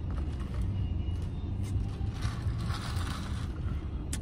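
Steady low hum of a car, heard inside its cabin, with a soft sip of an iced drink from a cup about two seconds in.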